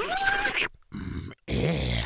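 A cartoon creature's voice: a groan-like cry that rises in pitch, then cuts off abruptly, followed after a short gap by a brief low grunt.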